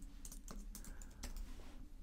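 Computer keyboard being typed on: a few faint, irregular key clicks.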